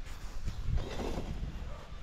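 A faint, distant person's voice speaking briefly about half a second to a second in, over a steady low rumble.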